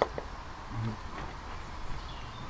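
Quiet steady low background rumble with a light click at the start, as a wooden brush edge is pressed against putty on a cast iron hopper, and a brief murmured voice a little under a second in.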